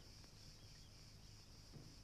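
Near silence: a faint, steady high hiss of background ambience over a low hum.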